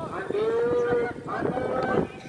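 A voice holding two long drawn-out calls in a row, each a steady held pitch lasting most of a second, in the manner of a match commentator stretching out his words.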